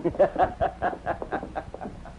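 A man's mocking laugh: a quick run of short "ha"s, about five a second, fading away over two seconds.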